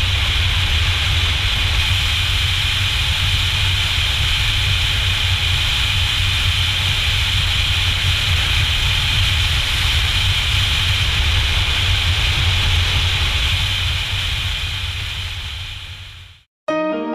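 Steady wind rush and riding noise of a BMW F800GS motorcycle at road speed, picked up by a camera mounted on the bike, with a deep rumble under a bright hiss. It fades out over the last couple of seconds.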